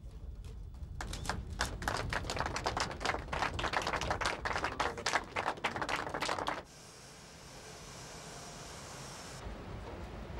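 A rapid, irregular run of sharp clicks lasting about five seconds, which cuts off abruptly. It gives way to a quieter, steady hum.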